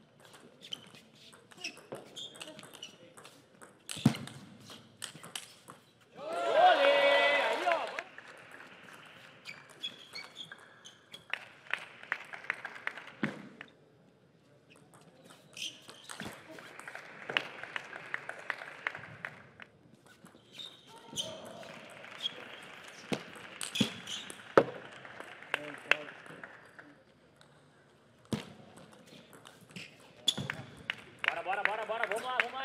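Table tennis rallies: the plastic ball clicking off the rackets and table in quick runs of hits. A loud shout from a player between points about six seconds in, and stretches of crowd noise and voices between rallies.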